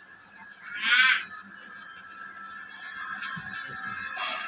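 A single short, high-pitched animal-like cry about a second in, the loudest sound, over a steady faint high tone.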